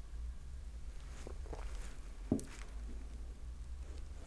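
Faint swallowing as a mouthful of beer is drunk from a glass, with one sharp click a little past halfway, over a low steady room hum.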